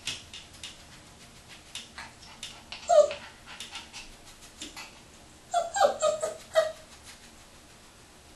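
Young Parson Russell terrier puppy whimpering and yipping: one sharp cry about three seconds in, then a quick run of four or five high yips around six seconds. Light scattered clicks and scratches come from it shifting about on the wooden hamper.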